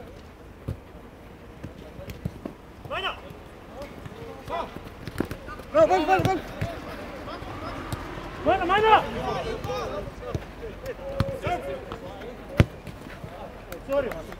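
Football players shouting to each other across the pitch, the loudest calls about six and nine seconds in, with short thuds of the ball being kicked and one sharp loud kick near the end.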